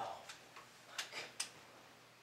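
A few faint, sharp clicks, the clearest two about a second in, between short quiet gaps.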